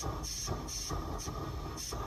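Lit propane weed torch burning with a steady rushing hiss.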